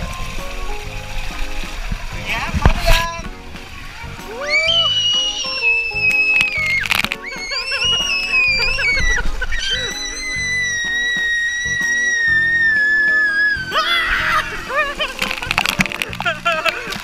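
Water rushing and sloshing down a fibreglass water slide as riders go down it, over background music. From about four seconds in come long, high-pitched squeals that rise and fall, and near the end there is a splash into the pool.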